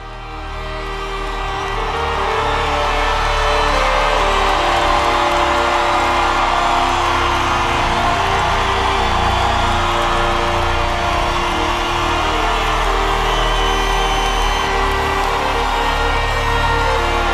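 Live band playing sustained opening chords while a large crowd cheers and whoops; the sound fades up over the first few seconds, then holds steady.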